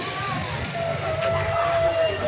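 Street traffic noise with indistinct voices in the background.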